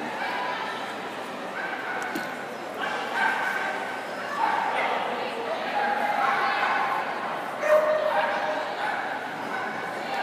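Dogs barking and yipping repeatedly in short calls, over a background murmur of voices in a large indoor arena.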